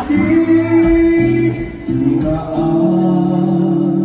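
A man singing a ballad into a microphone over backing music, holding long sustained notes.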